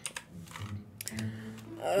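Computer keyboard typing: a few sharp key clicks near the start and again about a second in.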